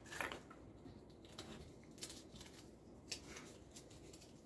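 Faint handling sounds of a prize-draw: a hand rummaging in a glass bowl of plastic capsules just after the start, then small clicks and paper rustles as a paper slip is taken out and unrolled.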